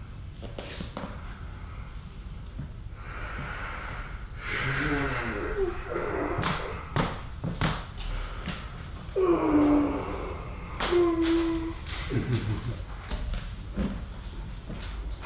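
A person breathing out heavily and making short hummed groans, one held and slightly falling, as body weight presses on them, with a few soft knocks.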